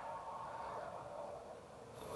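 Faint, steady room tone with a low hiss, no distinct events.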